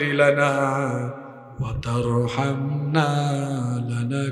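A man chanting an Arabic supplication (dua) in a slow, melodic voice, holding long notes, with a brief pause about a second and a half in.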